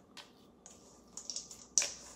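A spatula scraping and knocking against a stainless steel mixing bowl while stirring thick batter: a few short scrapes and clicks, the loudest just before the end.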